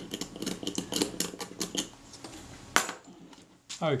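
A small steel tool picking and scraping at a glue-covered screw on the metal body of a Retina IIa camera: a quick run of light metallic clicks for about two seconds, then one sharper click a little under three seconds in.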